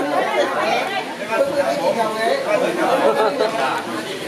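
Several people talking at once around a group seated together: overlapping, unintelligible chatter of mixed voices.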